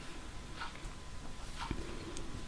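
Faint rustle of yarn and a metal crochet hook working stitches: a few soft scratches under a second apart, with a small click near the end.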